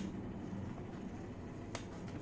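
Quiet room tone with a steady low hum, and one short faint click about three-quarters of the way through.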